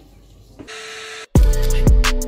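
A short burst of hiss with a steady hum under it, cut off suddenly, then loud intro music with deep drum hits and held notes starts near the end.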